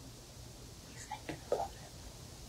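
A person whispering briefly and softly, a few short sounds from about a second in.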